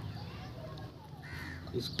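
A short animal call a little past halfway, over a steady low outdoor background.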